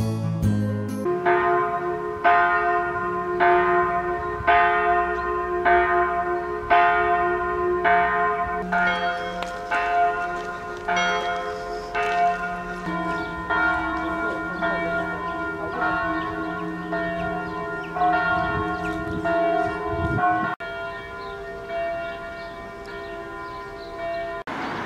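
Several church bells ringing from a bell tower, struck about once every three-quarters of a second, their tones ringing on and overlapping. About halfway through, the pattern of pitches changes as the bells swing in a different order.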